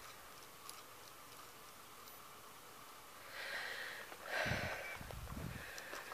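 Quiet outdoor background, then from about halfway a person's breathing and sniffing close to the microphone, with low rumbles from the camera being handled.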